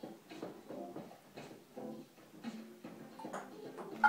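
Ping-pong ball being hit back and forth with frying pans and bouncing on a wooden table: a series of light, irregularly spaced taps during a rally.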